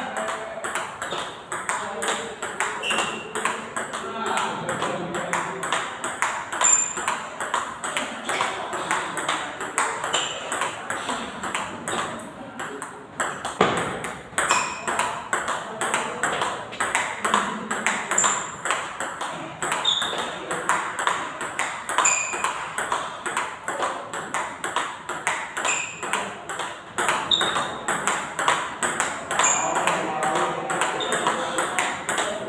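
Table tennis multiball drill: balls are fed one after another and struck back, with rapid hits of ball on bat and bounces on the table. These make a fast, steady run of sharp clicks, some with a short high ping.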